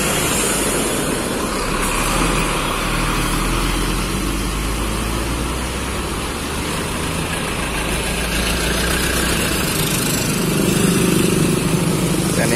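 Diesel engine of a Scania K310 intercity coach, a steady low drone as the bus pulls past and drives off down the road, fading out after about nine seconds. Motorcycles and other road traffic are heard near the end.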